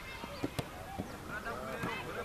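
Overlapping calls and shouts of footballers at training, short rising and falling cries from several people at a distance, with a few sharp knocks in between.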